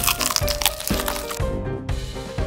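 Crisp fried chicken crust crunching with a bite into a seasoning-powdered drumstick, most densely in the first second, over background music with a beat about twice a second.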